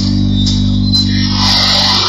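Live experimental electronica with folk elements: a steady low bass drone with little drum beat, and a hissing high noise swell that rises in the second half.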